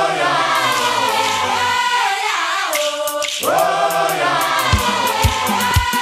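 A chorus of women singing a traditional Congolese song of the Lékoumou region in long group phrases, with low drum beats coming in near the end.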